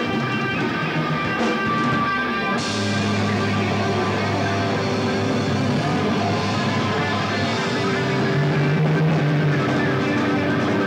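Metal band playing live: distorted electric guitars and bass holding sustained notes over drums, with a new low chord and a cymbal crash struck about two and a half seconds in.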